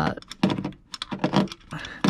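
Hand ratchet clicking in short, uneven runs of clicks as a bolt is turned loose under the hood.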